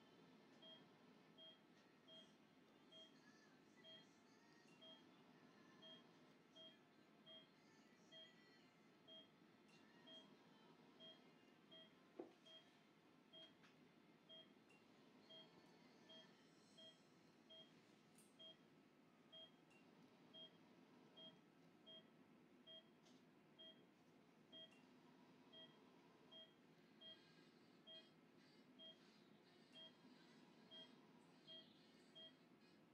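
Faint, evenly repeating short beep about once a second from a patient monitor during anaesthesia, following the dog's pulse. A single sharp click about twelve seconds in.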